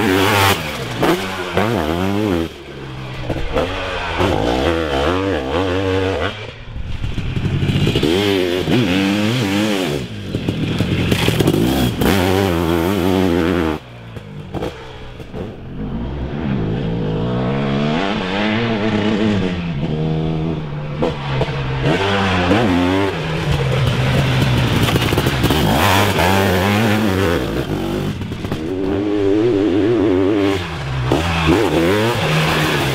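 Sidecarcross outfit's motocross engine revving hard, its pitch climbing and falling over and over as the throttle is opened and closed through corners and gear changes, with a few short drops in level.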